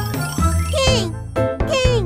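Children's song: backing music under a child-like voice singing two short phrases, each sliding down in pitch.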